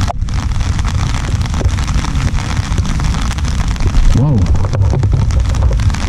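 Rain falling steadily on an umbrella held just above the microphone: a dense, even hiss of many small drop hits.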